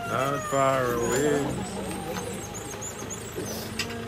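A person's voice close by for about the first second and a half, over a steady low drone that runs throughout.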